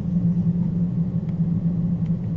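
Steady low hum, with a couple of faint clicks near the middle and end.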